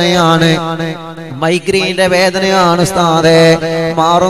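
Men's voices chanting a melodic Islamic supplication (dua) in long, wavering held notes. The loudness dips briefly a little after a second in.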